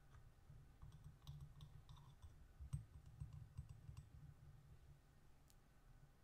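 Faint clicks and light taps of a small metal trinket box being handled in the fingers, with the sharpest click a little under three seconds in.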